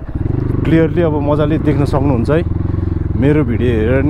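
A dirt bike's engine running steadily at low speed while it is ridden over a rough dirt track, with a steady low engine note under a man's voice.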